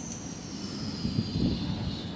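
A distant engine passing by: a steady low rumble with a thin high whine that slowly falls in pitch and fades out near the end.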